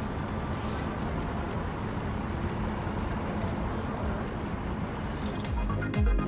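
Steady wind and road noise on the open top deck of a moving sightseeing bus, a low rumble under a hiss. Near the end, background music with a strong regular beat comes in and grows louder.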